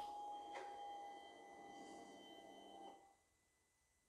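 Faint steady electric whine over a low hum as the Can-Am Ryker's fuel pump primes when the ignition is switched on, stopping abruptly about three seconds in.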